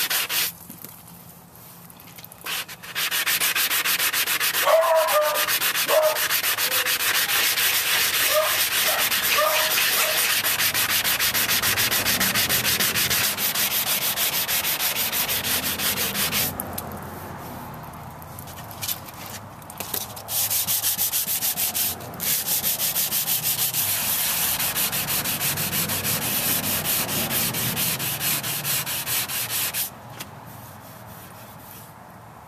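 Sanding block rubbed rapidly back and forth over a cured Bondo body-filler patch on a golf cart's metal panel, wet sanding under running water: a fast, even rasping. It stops briefly near the start and again for a few seconds just past halfway.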